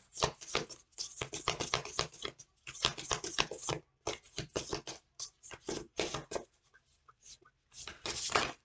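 A deck of oracle cards being shuffled by hand: a quick, uneven run of soft card-on-card flicks and slaps, busy for most of the time and thinning to a few scattered ticks near the end.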